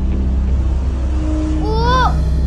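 A steady, low, rumbling drone of tense background music, with a short rising tone near the end.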